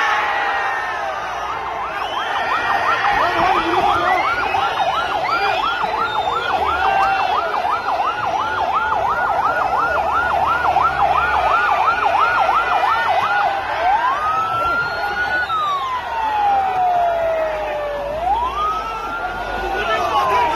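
Ambulance siren in a fast yelp, about four rises a second. About fourteen seconds in it switches to a slow wail that rises and falls every few seconds. A noisy crowd chatters and shouts underneath.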